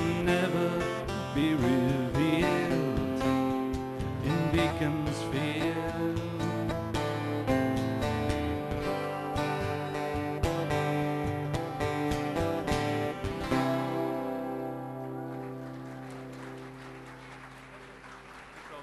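Closing bars of a country-folk song: strummed acoustic guitar under a voice holding the last sung line for the first few seconds, then a final chord struck about 13 seconds in and left to ring and fade away.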